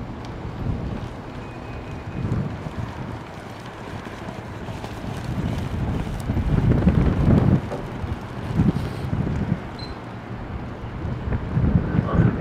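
Wind buffeting the camera microphone in uneven gusts, strongest about seven seconds in.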